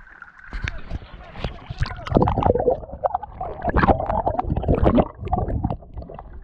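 Sea water splashing and gurgling against a small outrigger boat's hull and a camera dipping into the water, in loud irregular surges that begin about half a second in, with voices calling out.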